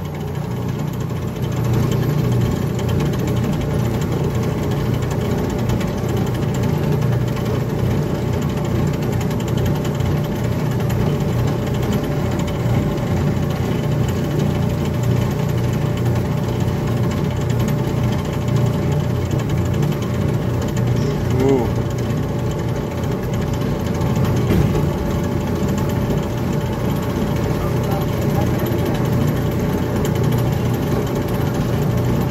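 Antique-style ride car's motor running steadily with a low chugging rumble as the car travels along its guide-rail track.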